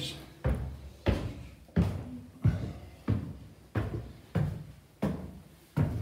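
Footsteps climbing a flight of stairs: about nine steady treads, roughly one and a half a second.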